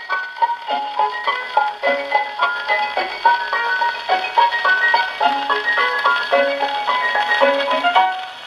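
Small orchestra playing a brisk instrumental passage of short, detached notes, from a 1929 78 rpm shellac record on an HMV 102 wind-up gramophone.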